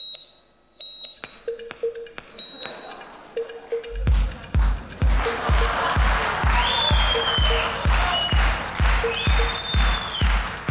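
A few short electronic beeps like a heart monitor, then about four seconds in a dance track starts with a steady kick drum about twice a second and gliding synth tones: a DJ's heartbeat played as club music.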